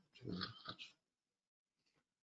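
A man's faint breath and mouth sounds, a few short ones in the first second.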